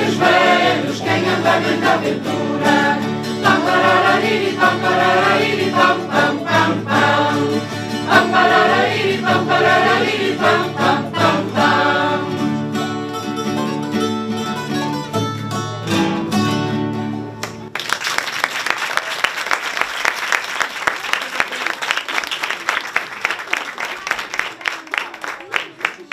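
A choir of adults and children sings a Portuguese folk song, accompanied by strummed acoustic guitars and other plucked string instruments. The song ends about 18 seconds in, and the audience applauds for the rest of the time.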